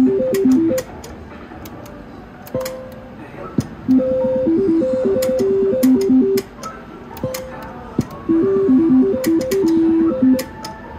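Three-reel slot machine playing its stepped electronic spin tune while the reels turn, heard three times as the player spins again and again. Between the tunes come quieter gaps with scattered sharp clicks.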